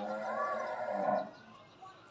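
A sharp click, then a single drawn-out call from a farm animal lasting a little over a second, its pitch rising and falling once.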